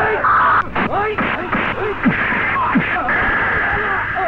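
Fight-scene soundtrack from an old film print: short shouts and grunts from the fighters, many in quick succession, with a few sharp hits, over a steady hiss.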